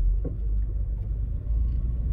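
Low, steady rumble of a car's engine and road noise heard from inside the cabin while driving slowly through a turn.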